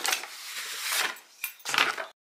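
Thin wooden frame strips and a sheet of cardboard being handled and slid on a tabletop: a run of scraping, rustling and light knocks, loudest near the end.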